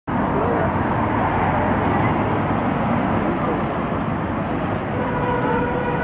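Busy city street: steady traffic noise with the voices of a crowd of passers-by mixed in. About a second before the end a steady pitched tone comes in and holds.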